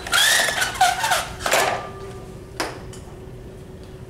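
Pull-down projection screen rolling up into its housing: a rattling whir for about a second and a half, then two knocks a second or so apart as it settles.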